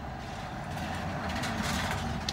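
A pickup truck drives past close by, its engine and tyre noise growing louder toward the end, over a low steady rumble.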